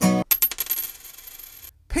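A coin dropped on a hard surface: a few quick clinks, then a high ringing that fades out over about a second.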